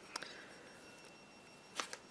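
Faint handling sounds of hands working a crochet hook through yarn: two brief soft clicks, one just after the start and one near the end, over a quiet room.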